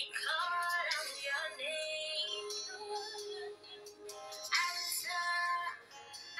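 Music with a high singing voice, sung notes gliding between held pitches.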